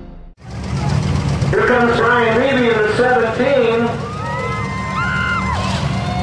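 Racetrack sound: a man's voice, like a public-address announcer, over a steady low engine rumble. Near the end come a few smooth tones that rise, hold and fall.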